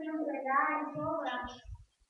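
A woman's high-pitched voice speaking Spanish, drawing out her vowels so that it sounds almost sung.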